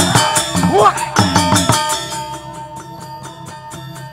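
Balinese gamelan playing, with loud voices calling out over heavy low strikes for the first two seconds. The music then drops to a quieter, rapid, even pulse of struck metal keys over a held tone.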